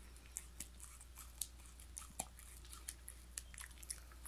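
A black Shiba Inu chewing a treat, with faint, irregular little crunches, about a dozen over a few seconds.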